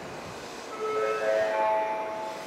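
Station platform chime: a short run of ringing electronic notes at several pitches, starting about two thirds of a second in, over the steady hubbub of the station.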